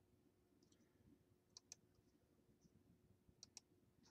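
Near silence: room tone with a faint steady hum and a few faint clicks, in pairs about a second and a half apart.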